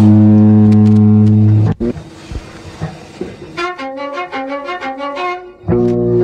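Band music from a 1986 pop demo recording, with bowed strings. A loud held chord cuts off abruptly under two seconds in. A quieter passage follows with a quick run of short notes, and the full band comes back in loudly near the end.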